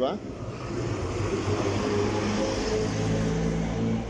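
A steady mechanical hum with a low rumble and a few steady low tones, building up over the first second.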